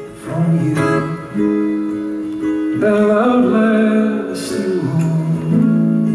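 Live acoustic guitar strummed, with a man's voice singing long held notes that slide between pitches.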